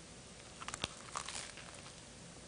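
A faint crackle and a few small clicks about a second in as a cheeseburger on a toasted bun is bitten into.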